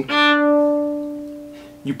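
A single open D string bowed on a violin, held at a steady pitch with no vibrato, swelling briefly and then fading away over nearly two seconds.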